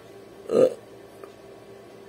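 A man burps once, briefly, about half a second in.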